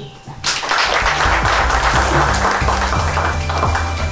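Applause breaking out about half a second in and fading, with music carrying a steady bass line coming in underneath about a second in and continuing.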